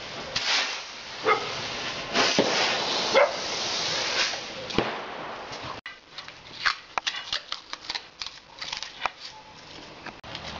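A firework burning on the end of a long rod, hissing steadily with several sharp louder bursts, for about six seconds; then the sound cuts off suddenly and a run of quick clicks and taps follows.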